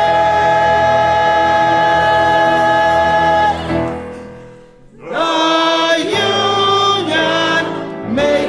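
Mixed-voice labor chorus singing: a long held chord that fades out about three and a half seconds in, then after a brief pause the choir starts a new phrase.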